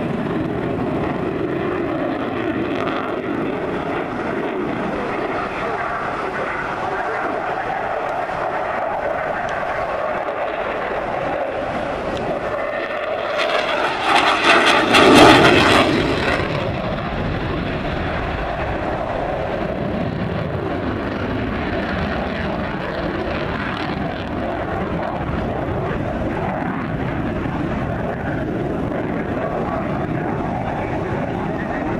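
Fighter jet's engine noise throughout the display, rising to its loudest about halfway through as the jet passes closest in a tight turn, then falling back to a steady level.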